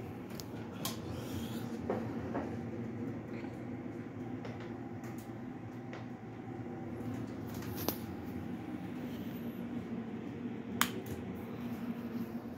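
A low steady hum with a few light clicks and knocks scattered through it, the sharpest about eleven seconds in.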